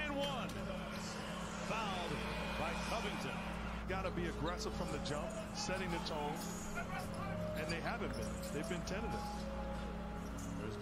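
Game broadcast playing quietly: a commentator talking and a basketball bouncing on a hardwood court, with short clicks and squeaks of play over a steady low hum.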